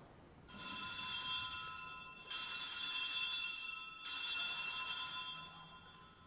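Altar bells (Sanctus bells) rung in three separate high, shimmering peals, each lasting over a second. They mark the elevation of the consecrated host just after the words of consecration.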